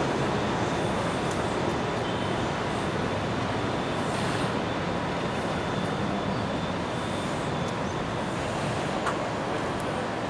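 Steady, even hum of city traffic heard from high above the streets.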